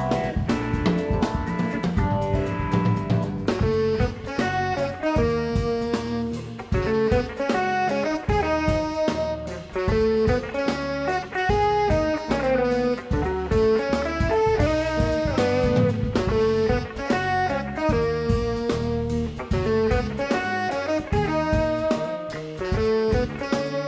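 Jazz-fusion quartet playing live: electric guitar, saxophone, electric bass and drum kit, with a quick, busy melody line of many short notes over steady drumming.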